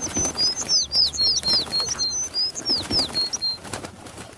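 Bird sound effect: a flurry of short, high chirps and tweets, many falling in pitch, mixed with wings flapping. The chirping stops a little before the end.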